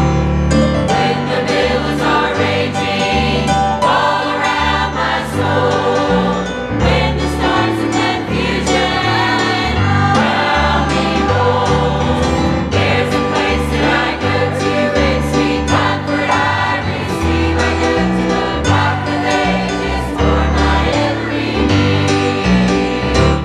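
Church choir singing a gospel song together with instrumental accompaniment and a moving bass line.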